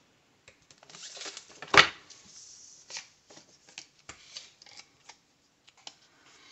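Paper stickers handled and pressed down onto a spiral planner page: soft paper rustling and small taps, with one sharp click a little under two seconds in.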